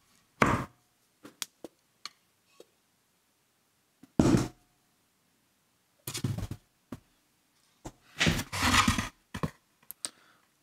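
A plaster slip-casting mold and a freshly cast clay pot are handled and set down on a wooden workbench. There are separate dull thunks about half a second, four seconds and six seconds in, small clicks between them, and a longer, rougher handling noise lasting about a second near the end.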